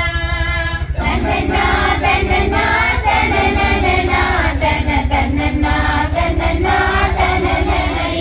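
A group of men and women singing a song together in unison, unaccompanied, with a fuller new line starting about a second in.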